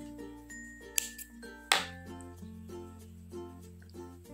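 Soft instrumental background music with a steady bass line, broken by two sharp snips of small thread scissors cutting cotton crochet yarn, a little under a second apart, the second louder.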